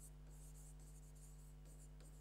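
Near silence: a faint steady electrical hum, with faint scratching of a stylus writing on the glass of an interactive display board.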